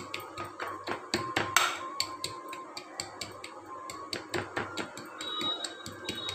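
A small steel tumbler pressed and tapped down onto soft coconut barfi in a glass baking dish, giving a run of light, irregular taps and knocks.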